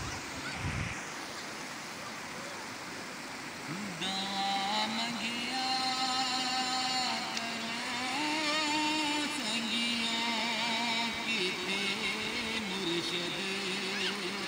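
River water rushing over rocks. From about four seconds in, a man sings unaccompanied into a handheld microphone, holding long, wavering notes that step up and down in pitch.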